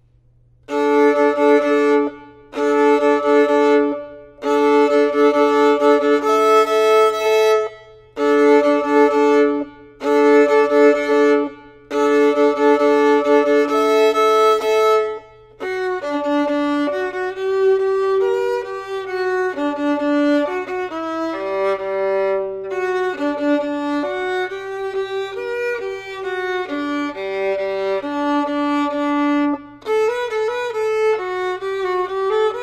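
Solo violin playing an orchestra part. First come six short phrases of held bowed notes with brief pauses between them, then from about halfway a continuous line of quicker, moving notes.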